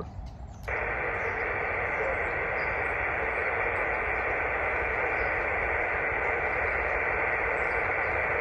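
Yaesu FT-817 transceiver's speaker hissing with steady single-sideband band noise on 10 metres (28.420 MHz). The hiss switches on suddenly under a second in, as the radio drops back from transmit to receive with no station talking.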